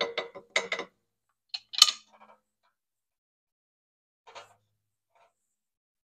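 Cooking utensils clinking and knocking against a metal pot: one sharp knock just under two seconds in, a few light ticks after it and a fainter clatter a little past four seconds. No frying sizzle is heard.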